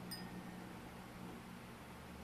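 Quiet room tone with a low steady hum, and a faint click just after the start.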